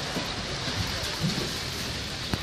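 Steady noisy hiss of outdoor street ambience on a slushy, snow-covered street, with faint voices in the background about a second in.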